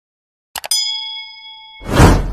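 Subscribe-animation sound effects: two quick mouse clicks, then a bright notification-bell ding that rings on for about a second. Near the end a loud whoosh swells up.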